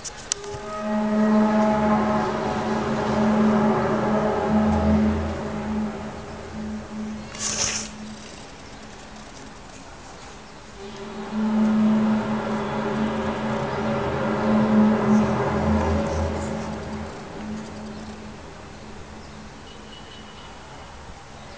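A loud, long drone at a steady low pitch with many overtones, heard twice, each time lasting about seven seconds before fading away: the unexplained 'strange sound' the video is about. A brief hiss comes just before the first drone ends.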